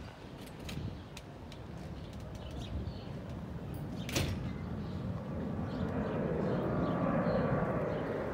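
Low outdoor background rumble with a few scattered clicks, one sharper click about four seconds in; the rumble grows louder through the second half.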